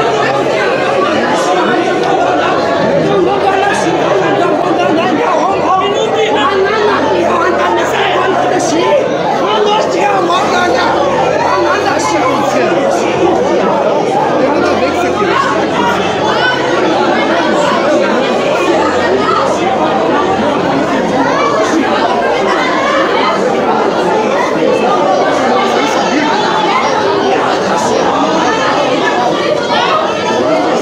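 Many people in a crowded church talking over one another at once, a steady loud din of overlapping voices in a commotion, with the echo of a large hall.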